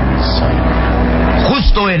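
Radio-drama sound effect of an aircraft engine droning steadily in flight, with a deep constant hum beneath it.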